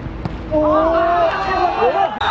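A football struck with a sharp thud near the start, then several young players' voices shouting and cheering from about half a second in, celebrating a scored penalty.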